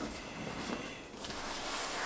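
Lid of a snug-fitting Apple cardboard box being pressed down over its base. About a second in, a rushing hiss of trapped air is pushed out as the lid sinks shut.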